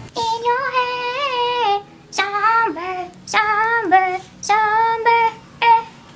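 A woman singing in a high voice: one long held note with a wavering pitch, then several shorter phrases that drop in pitch at their ends.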